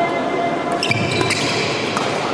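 Badminton rally on a wooden indoor court: a few sharp taps of rackets striking the shuttlecock and brief high squeaks of shoes on the floor, over a steady hall murmur.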